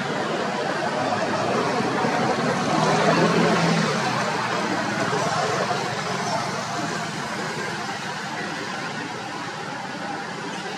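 Outdoor background noise with indistinct voices, growing louder to a peak about three seconds in and then easing off.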